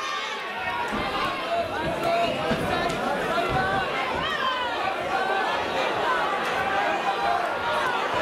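Boxing spectators shouting and chattering, many overlapping voices at a steady level.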